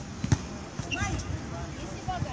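A volleyball struck once by a player: a single sharp slap about a third of a second in, sending the ball high.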